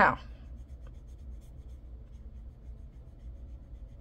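Soft brushing of a paintbrush on watercolor paper as a swatch is painted, faint over a steady low hum.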